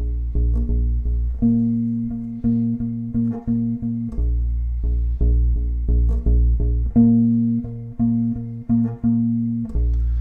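Unaccompanied electric bass strung with flatwound strings, playing repeated short plucked B-flat notes, a few a second, on the low E string. Twice it moves up to the same note an octave higher on the D string for a couple of seconds.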